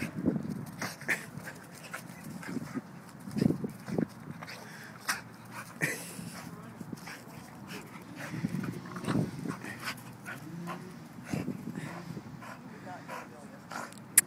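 A pit bull-type dog making short, irregular sounds while nosing and digging at a hole in the lawn.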